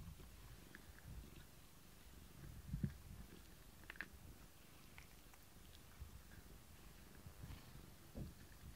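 Domestic cat purring faintly while being brushed around the face, with a soft thump nearly three seconds in and a few light clicks.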